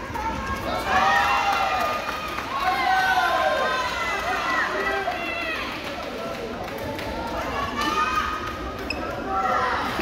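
Badminton doubles rally in a large sports hall: many short, high squeaks of court shoes on the floor, rising and falling, with light racket strikes on the shuttlecock and voices echoing in the hall.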